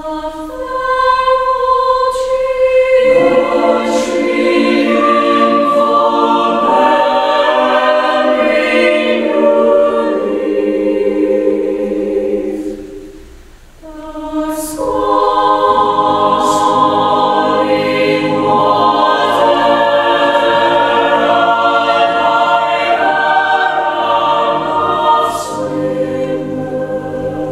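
Mixed chamber choir singing a choral piece, the texture filling out with more voices about three seconds in. The sound drops away briefly near the middle before the next phrase begins.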